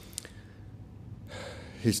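A man's sharp in-breath into a lectern microphone about a second and a half in, during a pause in his eulogy, after a faint click and low room tone; he starts speaking again at the very end.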